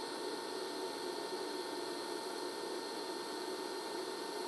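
Steady hiss of a scratch-started TIG arc from a small 110-volt inverter welder running at about 80 amps, with a faint steady high tone over it.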